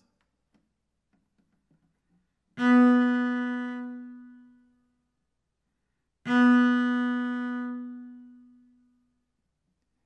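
A cello note played twice with sforzando: each starts suddenly and strongly, then dies away over about two seconds. The two notes begin about two and a half and six seconds in.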